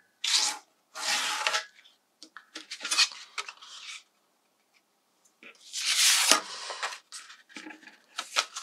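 A bone folder rubbing along the fold of a piece of craft card, in two short strokes at the start, followed by the rustle and handling of card and paper. About six seconds in there is a longer paper-on-paper slide with a light knock.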